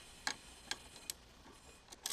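Ratchet with a 12 mm socket clicking while tightening the scooter's front brake caliper bolts: about four light clicks, unevenly spaced.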